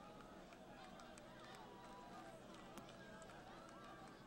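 Very faint, distant voices of the crowd and players at a night football game, with a few light clicks.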